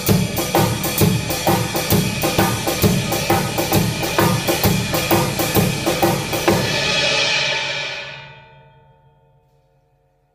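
Acoustic drum kit playing a two-bar blues shuffle groove: ride cymbal and snare struck together in a shuffle rhythm over the bass drum, with a rim shot on the first beat of the second bar. The groove stops about six and a half seconds in on a last cymbal hit that rings and fades out over about two seconds.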